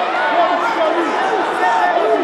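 Crowd of spectators talking and calling out at once, many overlapping voices in a steady, fairly loud hubbub.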